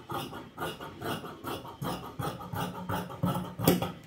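Large fabric scissors cutting through a layer of dress fabric, snip after snip, roughly three cuts a second, with the blades scraping along the work surface. The loudest snip comes near the end.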